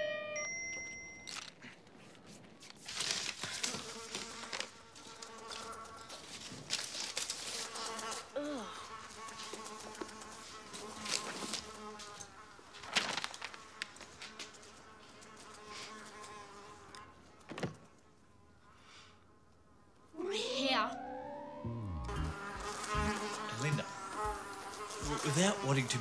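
Buzzing of flies, the pitch swooping up and down as they pass close, starting about twenty seconds in and going on with a wavering drone; the flies are drawn by the smell of unwashed, permed hair. Before that, faint voices and small knocks.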